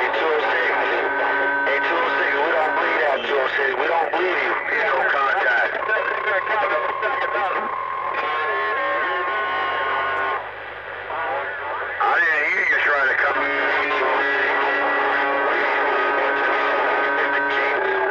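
A CB radio receiver carrying several stations keyed up at once: garbled, overlapping voices with steady whistling tones on top. The signal drops briefly about ten seconds in, then the jumble comes back as loud.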